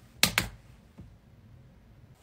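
Laptop keyboard being typed on: two sharp key clicks in quick succession about a quarter second in, then a faint tap or two.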